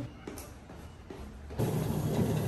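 Treadmill running under a walker, a steady motor hum with belt noise, starting about one and a half seconds in after a quiet moment.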